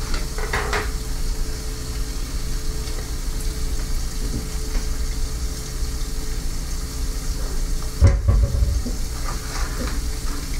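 Bacon sizzling in a covered electric skillet, a steady crackle of frying fat. About eight seconds in there is a single thump.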